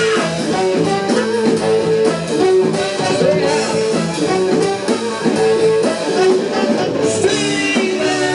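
Live band with a horn section of saxophones and trombone holding long notes over electric guitar, an instrumental passage.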